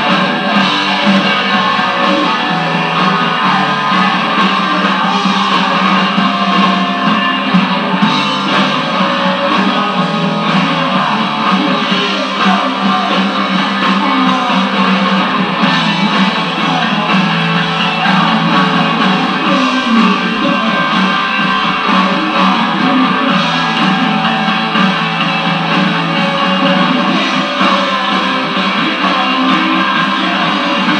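Live rock band playing loudly and without a break, guitars to the fore.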